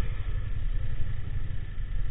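Motorcycle engine idling and creeping in stop-and-go traffic, heard through a bike-mounted camera as a steady low rumble.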